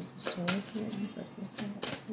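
Tarot cards being shuffled: several sharp snaps, two of them close together near the end, with a low murmuring voice underneath.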